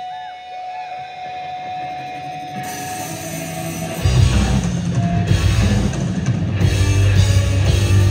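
Live rock band opening a new song. A quiet start over a held note gets brighter about two and a half seconds in. Halfway through, the full band with drums and electric guitars kicks in loudly and keeps going.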